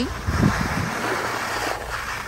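Skiing downhill: a steady rush of wind on the microphone mixed with skis sliding over soft, slushy spring snow, louder in the first half.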